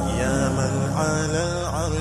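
Nasheed singing: a wordless sung melody gliding up and down over a steady low drone.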